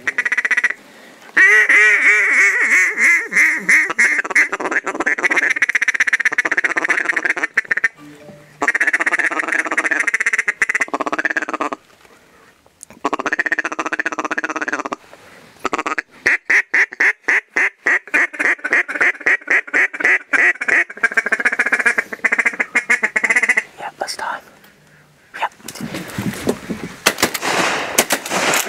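Hunter's hand-blown duck call sounding several long bouts of rapid, repeated quacks, separated by short pauses. Near the end there is a burst of sharp noise.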